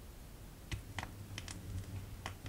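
Vinyl record crackle before the music: a handful of scattered clicks and pops, unevenly spaced, with a low hum coming in under them less than a second in.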